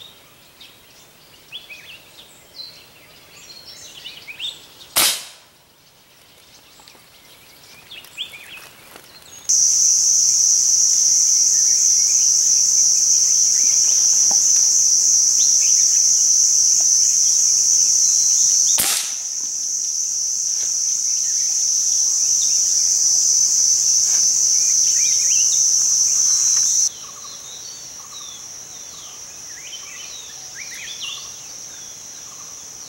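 Two single gunshots, about fourteen seconds apart, from a hunting gun aimed into the tree canopy, with scattered bird chirps. A loud, steady high-pitched cicada drone starts abruptly about ten seconds in, drops a little at the second shot and falls away sharply near the end.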